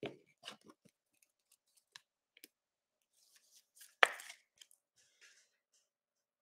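Trading card being slid into a rigid clear plastic toploader: faint scattered clicks and rustles of card and plastic, with one sharp click about four seconds in.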